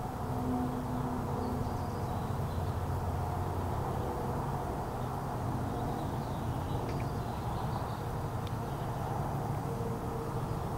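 A steady low mechanical hum over even background noise.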